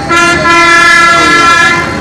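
A vehicle horn sounding one long, steady, loud blast of nearly two seconds, drowning out the street interview.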